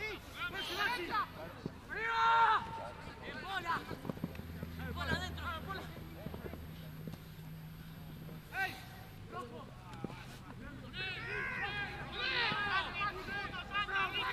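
Scattered shouted calls from players and people on the sideline across an open rugby pitch, the loudest about two seconds in and a cluster near the end. A low steady hum runs for a few seconds around the middle.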